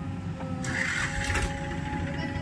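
JCB 3DX backhoe loader's diesel engine running under load with a steady hydraulic whine as the boom lifts a full bucket of wet sand. A rasping burst with a couple of knocks comes about a second in.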